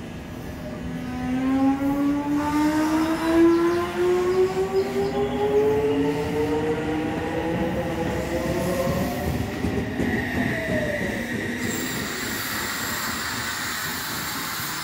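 Odakyu 1000-series electric train departing. Its GTO-VVVF inverter gives a whine of several tones that rise steadily in pitch as the train accelerates, over the rumble of the cars rolling past. The whine fades about ten seconds in, leaving a hissing rail noise.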